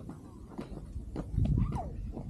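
Footsteps on a concrete path, a series of short scuffs and taps, with a low gust of wind rumbling on the microphone a little past halfway.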